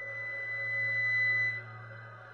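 Solo violin holding a high, pure sustained note in a contemporary classical piece; the note stops about a second and a half in. A low steady hum sounds under it.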